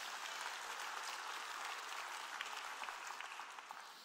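Congregation applauding faintly, dying away toward the end.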